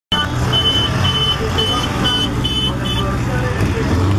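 A vehicle horn tooting in short repeated blasts, about two a second, over idling engines and crowd voices.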